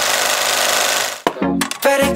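Rapid mechanical clatter of an old film projector, a sound effect under a film-leader countdown, stopping suddenly just past halfway; music comes back in right after.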